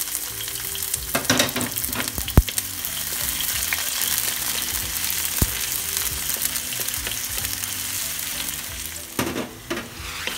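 Sliced onion and garlic sizzling in hot oil in a pan while being stirred: a steady frying hiss, with two sharp knocks about two and a half and five and a half seconds in.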